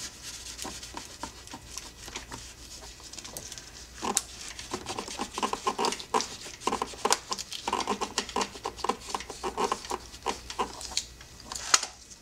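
Shop rag damp with throttle body cleaner being rubbed around the inside of a car's throttle body and its flap in quick repeated wiping strokes, scrubbing off oily grime. The strokes come sparsely at first and get much busier from about four seconds in.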